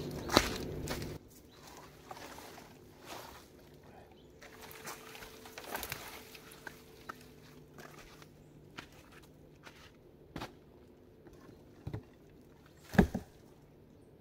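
Footsteps on a forest floor of pine needles and dry twigs, with scattered small crackles and snaps. Near the end come two louder cracks as a foot lands on the dugout's logs and branches.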